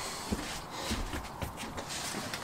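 A few soft knocks and scuffs as a foam RC plane fuselage is handled and moved on a workbench.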